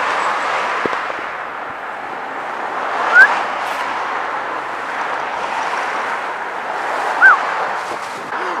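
Steady street-traffic noise from passing cars, with two short high chirps about four seconds apart.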